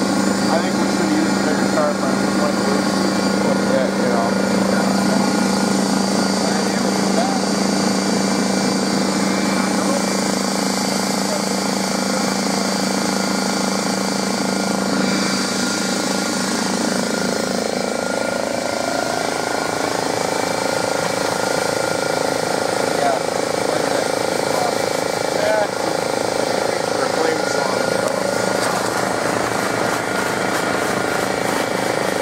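Air compressor supplying a pressure-pot sandblaster, running steadily with a constant drone; its pitch shifts upward a little about two-thirds of the way through.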